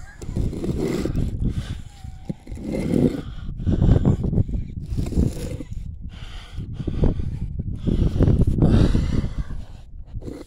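A heavy granite headstone being pushed and slid back onto its base: irregular low scraping and knocking of stone on stone and dirt, with the strained breathing and grunts of the man doing it.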